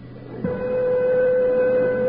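A steady horn-like tone held at one pitch, starting about half a second in.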